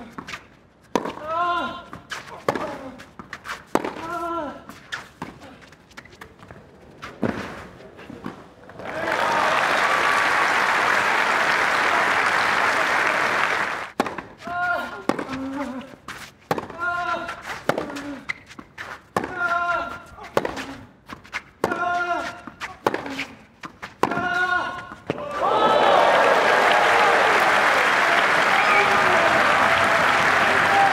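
Tennis rallies on a clay court: the rackets strike the ball in sharp knocks, one every two or three seconds, each with a player's short grunt. Crowd applause follows each point, for about five seconds a third of the way in and again near the end.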